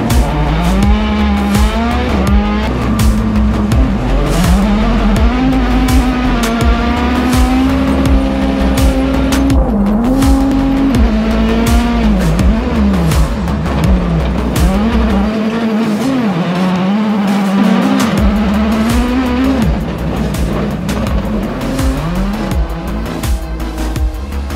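Onboard sound of a 600 hp rallycross supercar's engine, its pitch climbing and dropping again and again as it accelerates, shifts and lifts through the track. Music with a beat and deep bass plays underneath; the bass drops out for a couple of seconds past the middle.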